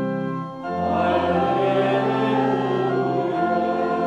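Church organ playing held chords while the congregation sings, moving to a new chord about half a second in and again a little after three seconds.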